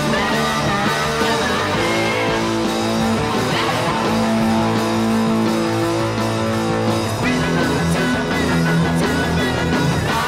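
Electric guitar with Wilkinson humbucker pickups, played through a Boss GT-8 multi-effects processor: a continuous hard-rock guitar part of sustained notes and chords, moving to a new figure about seven seconds in.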